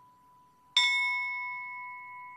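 A bell struck once, about three-quarters of a second in, ringing on with a slow fade. It is a memorial toll in the pause after a victim's name is read.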